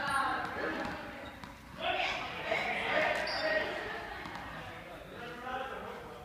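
Juggling balls being caught and dropping with soft thuds on a sports-hall floor, in an echoing hall, mixed with men's voices talking.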